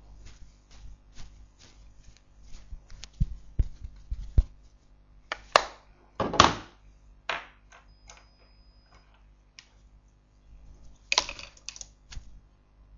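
Small clicks and taps of makeup items being picked up, opened and set down on a hard surface, with a few duller knocks and a louder clatter in the middle.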